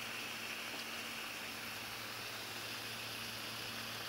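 Steady background hiss with a faint low hum underneath, no distinct events.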